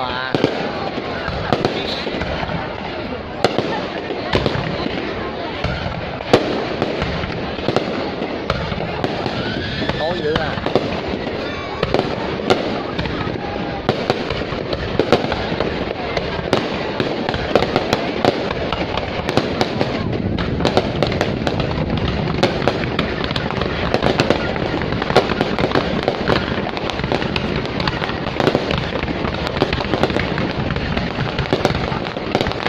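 An aerial fireworks display: a dense, continuous barrage of shell bursts and crackling pops, with sharp bangs standing out every second or so.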